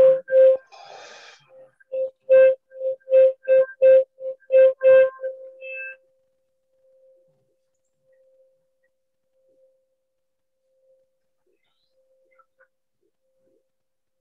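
A small wind instrument or cupped-hand whistle sounding a run of short notes on one pitch, about two or three a second, that trails off about six seconds in.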